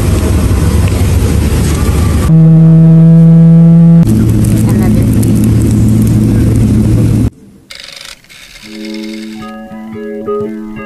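Airliner cabin noise: a loud, steady rush with a low hum that steps up to a higher, louder tone for about two seconds. It cuts off abruptly about seven seconds in, and plucked guitar background music follows.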